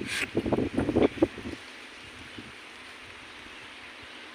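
Wind on the microphone outdoors: a few irregular low bumps for about the first second and a half, then a steady faint hiss.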